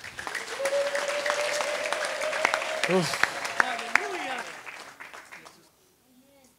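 A congregation applauding, a dense patter of hand claps that swells right away and fades out about five seconds in. A long steady held tone runs over the clapping, and a voice calls "Amen" near the middle.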